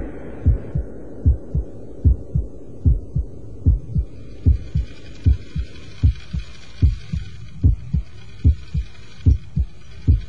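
Heartbeat sound effect: steady, low double thumps (lub-dub) at about 75 beats a minute. A faint hiss comes in underneath about halfway through.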